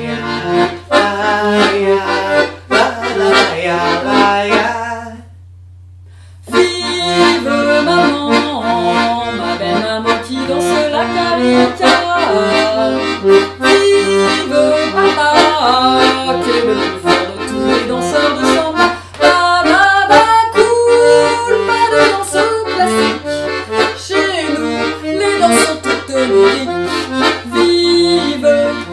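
Piano accordion playing a lively marchinha tune. It stops briefly about five seconds in, then starts up again and plays on without a break.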